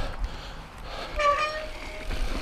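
A mountain bike rolling over rough, loose dirt singletrack, with a low steady rumble of tyres and wind on the helmet camera. About halfway through, a short, steady, whistle-like squeal lasts under a second.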